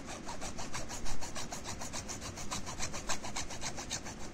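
Small hacksaw cutting through the plastic housing of a water-purifier filter cartridge, in rapid, even back-and-forth strokes.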